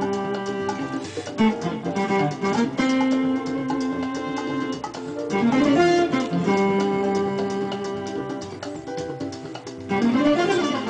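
Electric guitar playing a jazz-blues solo line, mixing quick runs with long held notes.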